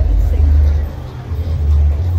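A loud, steady low rumble that eases briefly about a second in, with faint voices underneath.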